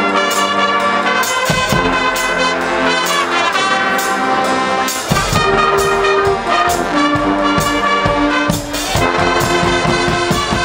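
A Guggenmusik carnival brass band playing live: trumpets, trombones and sousaphones play loud held chords over a drum kit. A deep bass and heavier drum beats come in about halfway through.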